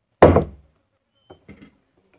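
A stainless steel mixer-grinder jar set down onto its plastic motor base with a single loud thunk, followed by a couple of faint light knocks.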